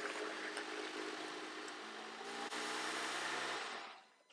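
Jeep Wrangler rolling slowly on gravel, its engine running at low speed with tyres crunching, then stopping; the engine note shifts about two seconds in and cuts off near the end as the engine is switched off.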